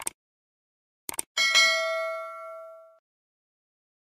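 Subscribe-button animation sound effects: a short click, then two quick clicks about a second in, followed by a notification-bell ding that rings and fades out over about a second and a half.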